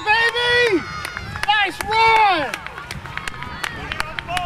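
Excited shouting from sideline voices: several loud, drawn-out yells in the first half, each rising and falling in pitch, then fainter calls, over scattered sharp ticks.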